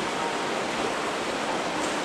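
Indoor swimming-pool ambience: a steady, even rush of water noise.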